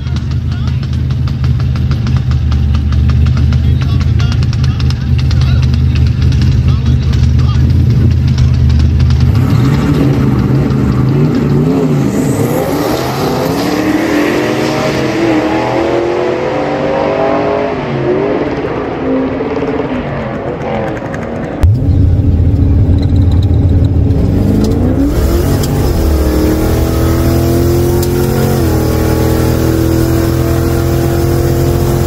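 Drag-strip launch: a Lincoln Town Car's V8 and the Jeep beside it idle at the line, then accelerate hard away down the track, the revs climbing and dropping back at each gearshift. About two-thirds of the way through, the sound jumps to inside the Town Car's cabin, a loud low rumble and then the engine climbing through the gears again.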